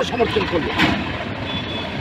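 Road traffic noise, with a short hiss about a second in and a faint high tone later, under trailing voices.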